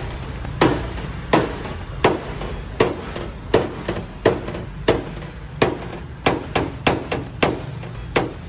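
Knocks of a hammer or mallet on a car's sheet-metal hood during dent repair: evenly spaced single strikes, a bit more than one a second, quickening into a faster run of taps near the end.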